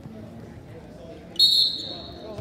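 Referee's whistle blown once, a sharp shrill blast about a second and a half in that holds briefly and then fades, signalling the wrestlers to start from the neutral position.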